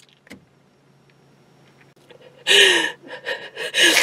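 A woman sobbing: after about two seconds of quiet, a sudden gasping cry halfway through, followed by shorter breathy sobs.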